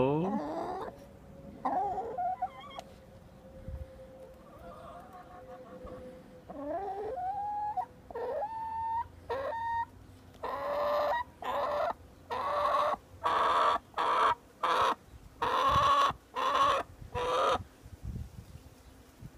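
Barred Rock hen calling loudly and insistently: a few rising squawks, then from about ten seconds in a quick run of short repeated calls.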